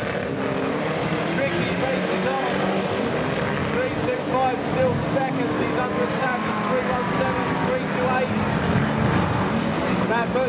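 Several banger racing cars' engines running as they race and jostle round a shale track, with a public-address commentator's voice carrying over them.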